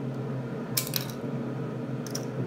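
Small plastic toy car launcher firing a die-cast toy car: a brief cluster of sharp clicks and clatter about three-quarters of a second in.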